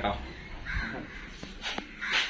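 A crow caws once, a little under a second in, followed by a couple of light clicks.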